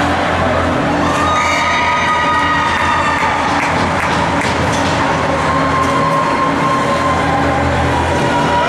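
Steady low machine hum filling an indoor ice rink, with spectators' voices calling and cheering over it and a few faint clacks from the ice.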